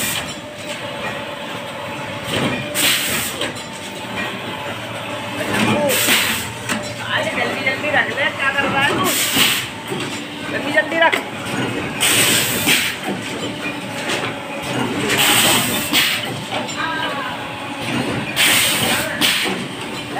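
Automatic dona/pattal paper plate making machine running, its pneumatic press letting out a sharp hiss of air about every three seconds as it cycles, over a steady machine hum. Voices can be heard faintly in the background.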